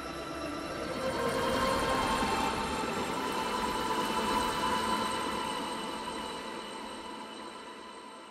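Hyundai Elantra N's turbocharged 2.0-litre four-cylinder engine running hard through a corner. Its note swells over the first few seconds, then fades as the car pulls away.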